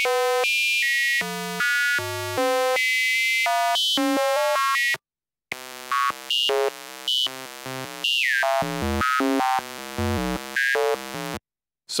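Sawtooth synth tone from Phase Plant's analog oscillator, run through a frequency shifter, jumping between random pitches in quick steps of a fraction of a second. It stops briefly about five seconds in, then resumes quieter with busier steps and one falling swoop.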